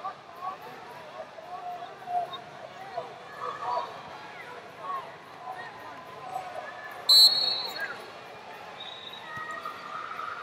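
Many overlapping voices of coaches and spectators calling out in an arena, with one short, shrill referee's whistle about seven seconds in that stops the wrestling.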